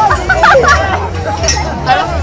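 Crowd of spectators talking at once, with overlapping voices and a steady low rumble beneath.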